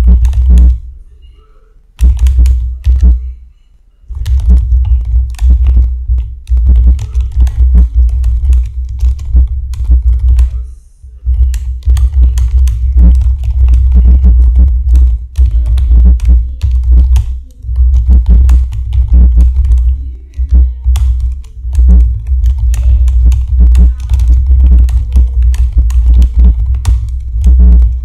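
Computer keyboard typing in a fast, irregular run of keystrokes, each with a deep thud, pausing briefly twice in the first few seconds and again about eleven seconds in.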